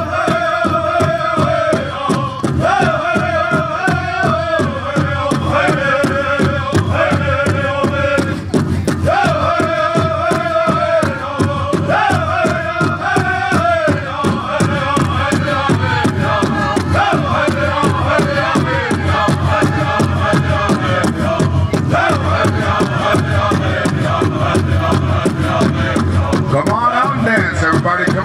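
A group of singers singing a 49 song together in unison over a steady, driving hand-drum beat.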